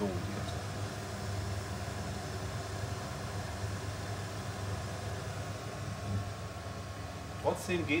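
Bora S Pure cooktop extractor fan running steadily, a whooshing hum as it draws air and steam down through the hob's centre inlet from a pot of water at the boil.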